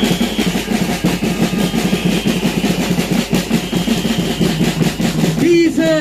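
Drums beaten in a fast, dense roll, with a high steady tone held over them. A man's amplified voice comes back in just before the end.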